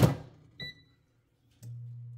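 Air fryer basket pushed home with a clunk. A short electronic beep from the touch panel follows, then a click and the low steady hum of the fan starting up.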